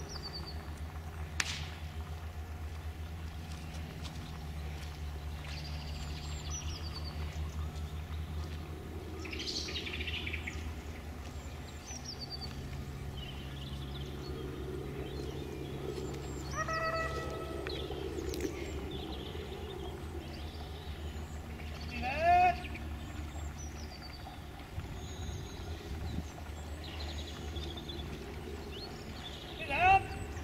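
Foxhounds giving tongue: a few short cries that rise in pitch, the loudest about two-thirds of the way through and another right at the end, with a held cry a few seconds earlier. Small birds chirp over a low steady rumble.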